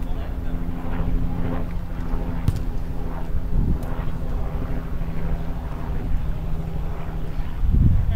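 Players' shouts carrying across an outdoor football pitch over wind on the microphone and a steady low drone, with one sharp knock about two and a half seconds in.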